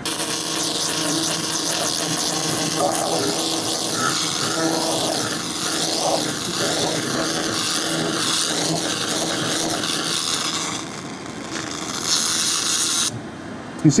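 2000 W handheld fiber laser cleaner firing at a sheet of plywood, giving a loud, steady hiss. The hiss drops for a moment about eleven seconds in, comes back, then cuts off abruptly about a second before the end.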